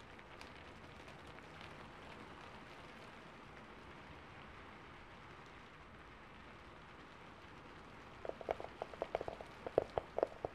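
A soft, steady hiss, then about eight seconds in a quick flurry of short, low-pitched taps, much louder than the hiss.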